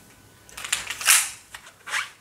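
WE Tech Beretta M92 gas blowback pistol being worked: metallic clicks of its slide and mechanism, with one short, loud burst of gas about a second in.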